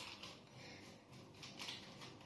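Faint, soft handling sounds of carrot-pulp dough being pressed flat by hand onto a dehydrator sheet, with a brief light rustle about one and a half seconds in.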